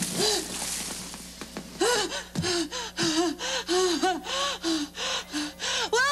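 A woman gasping for breath after a dunking in water: rough, breathy gasps at first, then a quick run of short voiced gasps, about three a second.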